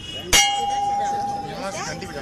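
A hanging brass temple bell struck once, about a third of a second in, then ringing on with one clear tone that slowly fades.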